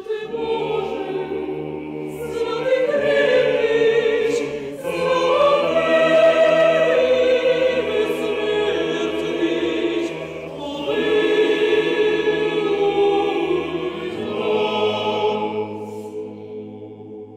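Mixed chamber choir of men's and women's voices singing sustained choral chords. The music comes in swelling phrases with brief breaks about five seconds in and again about halfway through.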